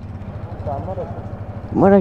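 Motorcycle engine idling with a low, steady rumble. A man's voice says a word near the end.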